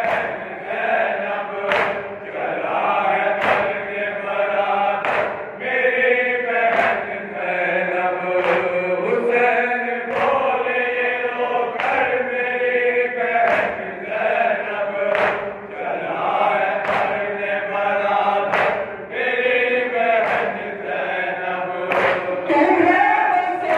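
Men's voices chanting a noha lament in unison, with the crowd's hands striking their chests together in matam about once every second and a half to two seconds.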